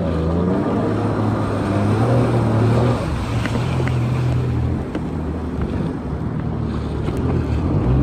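Jet ski engine running under way, its hum stepping up and down in pitch a few times as the throttle changes, with wind buffeting the microphone and water rushing past.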